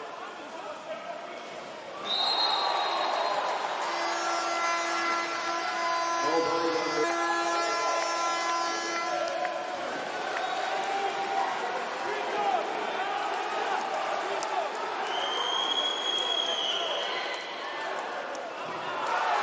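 Water polo crowd in an indoor pool hall cheering and chanting a home goal. A steady horn is held for about five seconds in the middle. A short high whistle blast comes about two seconds in, and a longer one near the end.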